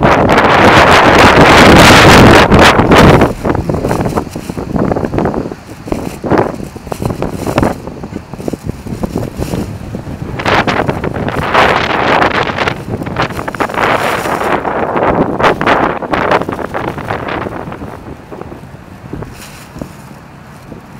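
Wind buffeting a phone's microphone, very loud for about the first three seconds, then coming in weaker gusts that die away near the end.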